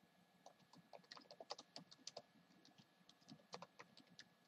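Typing on a computer keyboard: a quick, irregular run of faint key clicks as a line of text is entered.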